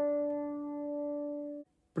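A single acoustic guitar note, the second string fretted at the third fret (D), ringing and slowly fading, then cut off about a second and a half in.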